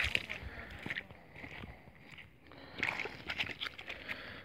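Faint handling noise: scattered small clicks and rustles, a little louder about three seconds in.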